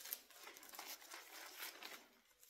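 Faint, irregular crinkling rustle of something being handled close to the microphone.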